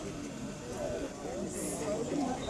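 Indistinct murmur of several people talking in the background, no words clear, with a brief high hiss near the end.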